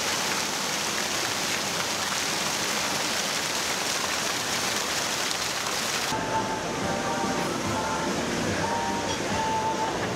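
Water fountain jets splashing steadily into the basin. About six seconds in the splashing cuts off, giving way to a quieter background with faint, short musical tones.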